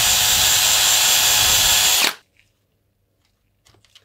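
DeWalt XR cordless drill running at a steady speed, a drill bit reaming out the body-clip hole in a plastic RPM shock tower mount; the drill cuts off about halfway through.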